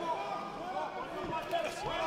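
Faint, distant voices in the background, several people talking or calling out at once.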